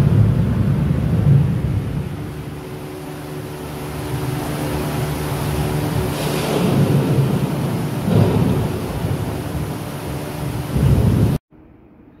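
Simulated thunderstorm in a wave pool: loud thunder sound effects rumbling in several swells over rushing water as the pool churns with machine-made waves and spray. A faint steady machine hum runs underneath, and the sound cuts off abruptly near the end.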